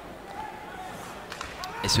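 Ice hockey rink sound during live play: a steady hiss of skates on the ice with a few sharp clicks about a second and a half in.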